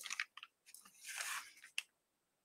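Quiet pause with a few faint soft clicks, a short breath-like hiss about a second in, and one small sharp click near the end.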